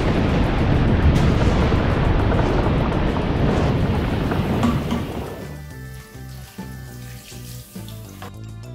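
Baking soda and vinegar reaction fizzing and foaming out of a plastic bottle, a loud rushing hiss that fades away about five seconds in, over background music that is left on its own after that.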